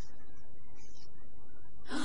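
A woman's short, audible gasp of breath near the end, over a faint steady background hum.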